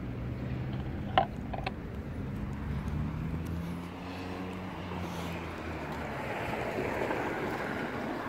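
Road traffic: a vehicle engine hums steadily, then tyre noise swells as a car passes near the end.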